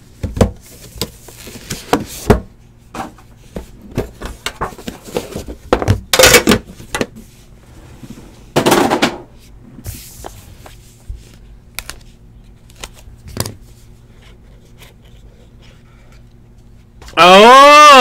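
Cardboard trading-card box and cards being handled: scattered clicks and taps, with a few short scraping, sliding rushes about six and nine seconds in as the box is opened and the card stack pulled out. A man's voice begins near the end.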